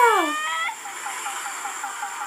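Anime soundtrack playing from a tablet's speaker: a high voice falling in pitch fades out in the first half-second, then a steady shimmering transformation-style effect with about seven soft, even pulses a second.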